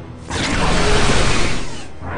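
A sound effect of metal machinery clattering and whirring, swelling suddenly about a third of a second in and fading away near the end.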